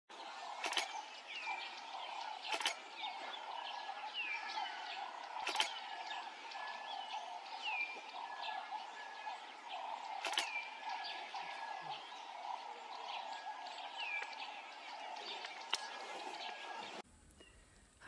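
Birds calling in the bush, with short downward-sliding chirps repeated every second or two over a steady background hum. A few sharp clicks sound at scattered moments, and the whole ambience stops abruptly near the end.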